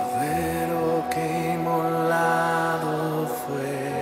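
Slow live Christian worship music: a voice holds long low notes over a steady sustained backing tone.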